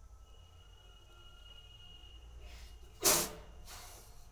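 Handling noise as the phone is set down and propped against the laptop: a sharp rustling scrape about three seconds in, with softer rustles just before and after it, over quiet room tone and a faint thin whine.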